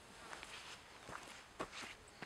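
A person's footsteps on a dirt path, several soft irregular steps, faint, the loudest about one and a half seconds in.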